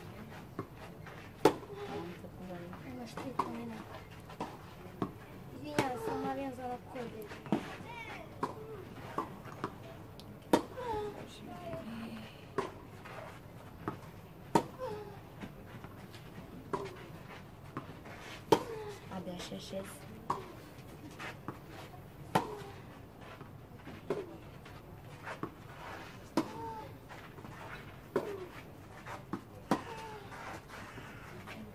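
Tennis ball struck back and forth by racquets in a long baseline rally, a sharp pock about every two seconds. The nearer player's shots are the loudest.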